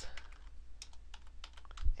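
Typing on a computer keyboard: an uneven run of about a dozen quick key clicks as a word is entered, with a low thump just before the end.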